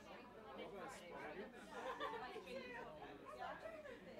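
Indistinct talking and chatter of several voices, with no clear words, running on throughout.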